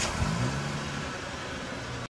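Car engine sound effect: the engine revs up briefly, then holds a steady run while slowly fading.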